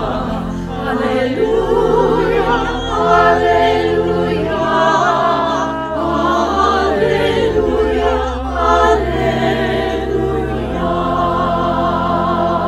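Small mixed church choir singing in parts with organ accompaniment, the organ holding low sustained bass notes under the voices. The singers are recorded separately and mixed together as a virtual choir.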